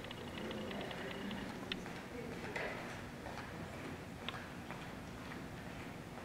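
Quiet hall ambience with faint distant voices, a short run of light high ticks in the first second, and a few isolated light clicks later on.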